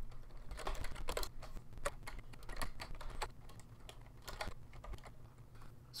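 Typing on a computer keyboard: a quick, irregular run of key clicks that thins out near the end.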